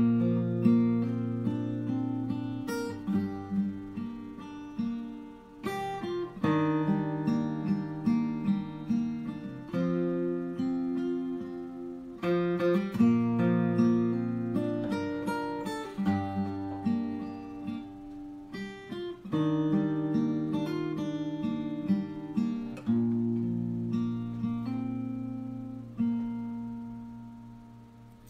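Solo acoustic guitar playing a picked chord accompaniment with a melody line, in phrases that begin anew every few seconds. The last chord is left to ring out and fade near the end.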